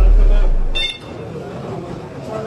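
The tail of a loud, deep falling bass rumble from a news-graphic transition sound effect, ending just under a second in with a brief high beep. Then the murmur of a crowd of voices.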